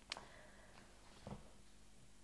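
Near silence: room tone with a low hum, a faint click just after the start and a soft, brief low sound a little past the middle.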